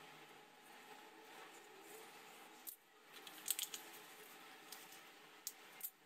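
Faint handling noise from a snap-off craft cutter cutting free the sheet's secured corners and the painted sheet being lifted, with a few light clicks in the second half.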